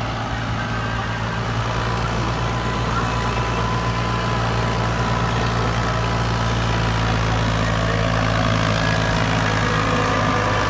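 Diesel farm tractor engine running steadily while pulling a loaded trolley, growing gradually louder as it approaches.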